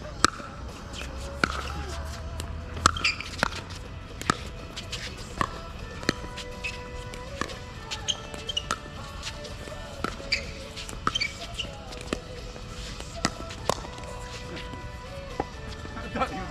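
A pickleball rally: a long run of sharp pops from paddles striking the plastic ball, with some bounces on the hard court, coming at uneven intervals of about one a second or faster.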